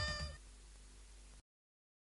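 A woman's last held sung note with vibrato over the song's backing music, ending about a third of a second in. A faint tail follows, then the sound cuts off into dead silence about a second and a half in.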